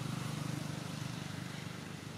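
A steady low engine drone with a rapid fine pulse, under an even background hiss, easing slightly toward the end.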